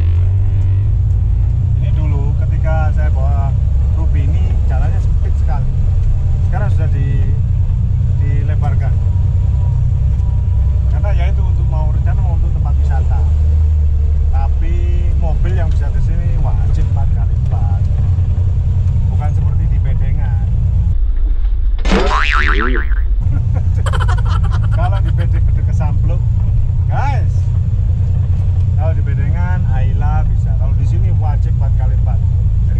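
Toyota Land Cruiser FJ40's engine and drivetrain running under load on a rough trail, heard from inside the cab as a steady low rumble. About two-thirds of the way through, a short springy, sweeping boing-like sound briefly cuts across it.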